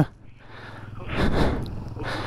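Small motorcycle engine running at low revs on a rough rocky track. A rougher swell of noise comes about a second in.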